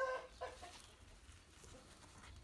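A hen clucking: two short clucks, the first right at the start and the second about half a second later.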